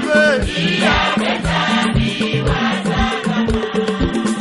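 A choir of voices sings a gospel song in Kikongo over a stepping bass line and a steady drum beat of about three strikes a second.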